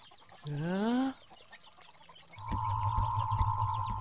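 A short rising voiced cry, then a steady high humming tone over a low drone that starts a little past the middle: a cartoon sound effect as the magic staff is shown.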